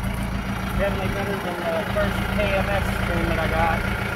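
Mahindra Roxor's four-cylinder turbo-diesel idling steadily through a three-inch exhaust pipe, with quiet talk over it.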